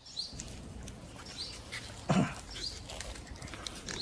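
Faint background with animal calls: a few faint high chirps and one short, louder call that falls steeply in pitch about two seconds in.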